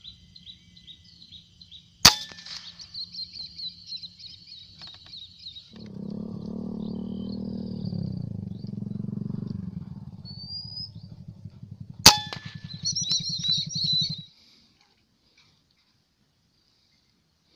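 Two rifle shots about ten seconds apart, each a single sharp crack, over high, rapid chirping of birds or insects. A low droning hum runs between the shots, and the sound cuts off abruptly shortly before the end.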